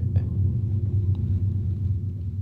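A low, steady rumble with almost nothing above it in pitch.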